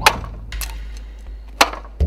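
Sharp cracks of a katana slicing through green bamboo stalks: a loud one right at the start, then two more, about half a second and a second and a half in.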